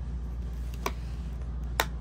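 Plastic DVD keep case being shut: two sharp plastic clicks, a lighter one about a second in and a louder snap near the end as the lid latches.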